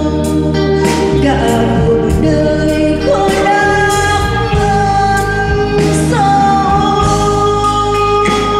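A woman singing a slow song into a microphone with a live band accompanying her, holding long notes that slide from one pitch to the next, over drums and cymbal strikes.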